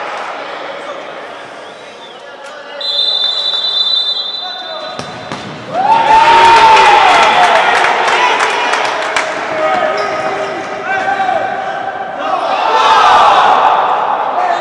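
Live futsal play on a wooden indoor court: the ball knocking and bouncing off feet and floor, players and spectators shouting. Near the start a whistle blows steadily for about two seconds.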